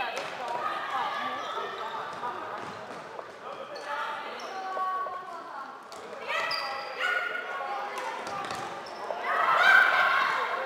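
Floorball being played in a sports hall: players calling and shouting to each other, with scattered sharp clicks of sticks striking the plastic ball. The shouting swells near the end.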